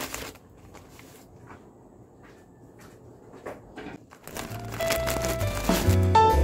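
A knock, then faint crinkling and rustling of packaging being handled. After about four seconds, background keyboard music comes in.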